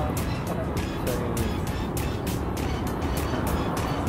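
Background music with a quick, steady beat, over a continuous low rumble and a few faint snatches of voice.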